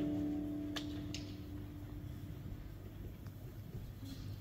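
A chord held by a live rock band's guitars and keyboards rings out through the PA and fades away over about two seconds, leaving a low steady hum in the hall. Two faint clicks come about a second in.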